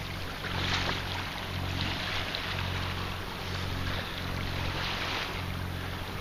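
A sailboat's engine running steadily with a low hum while it motors in to anchor, under a gusting rush of wind on the microphone.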